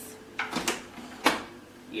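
Tilt-head stand mixer's head being lowered and set down over the bowl: three short clicks and knocks, the last and sharpest about a second and a quarter in as it locks into place.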